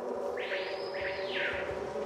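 Sound-effect bed of insects buzzing in a steady drone, with distant bird calls: about half a second in, two swooping calls rise and fall and fade out within about a second.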